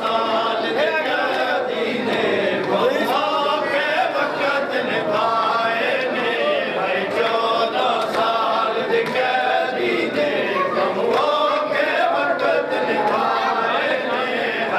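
A group of men chanting a nauha, a Shia mourning lament, in unison with no instruments, mixed with hand slaps of matam (beating of the chest).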